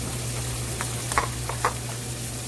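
Ground chicken sizzling in a wok, a steady hiss over a low hum. A few sharp clicks of a metal utensil come in the second half, two of them louder.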